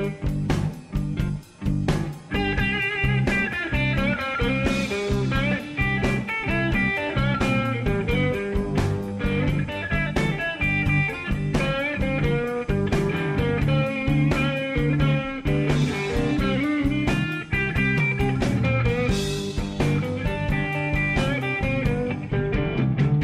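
Electric blues recording in an instrumental stretch between sung verses, led by guitar over a steady beat.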